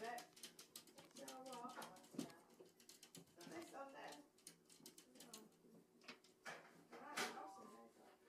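Faint voices in a quiet room, with light, scattered taps of a Persian cat's paws patting against a glass door.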